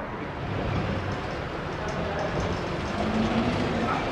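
Vintage tram running along the rails: a steady, mostly low noise of wheels on track.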